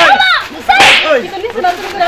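Voices shouting and exclaiming in a scuffle, with two sharp noisy sounds, one at the very start and one about a second in.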